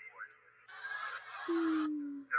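A man's shocked, drawn-out 'ooh', a single held note sliding slightly down in pitch, starting about one and a half seconds in over fainter sound from the wrestling footage.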